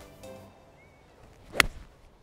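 A Mizuno MP20 MMC forged iron with a copper underlay striking a golf ball off the tee: one sharp click about one and a half seconds in.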